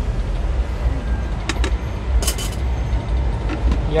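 Steady low rumble of background street traffic, with a few light clicks over it.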